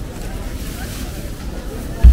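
Wind rumbling on the microphone, with faint voices of shoppers in an outdoor market crowd underneath.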